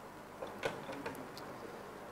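A few faint, light ticks spaced irregularly over quiet room tone.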